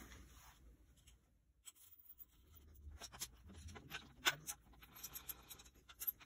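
Faint handling noise: scattered light clicks and scratchy rubbing that begin about a second and a half in, as the handheld camera is moved and brushes against cloth.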